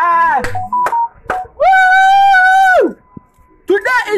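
A man's voice: an excited cry that falls in pitch at the start, a couple of clicks, then one long, high, held wail of over a second that slides down at the end.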